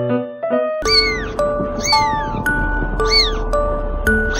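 A very young kitten mewing: high, thin cries that rise and fall, about one a second, starting about a second in, over background music with held notes.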